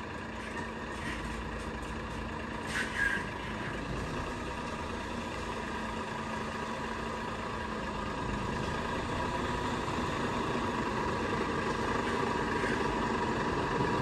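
Semi-truck diesel engine running at low speed while the tractor and trailer manoeuvre slowly, growing a little louder near the end as the truck comes closer. A short, sharper sound about three seconds in.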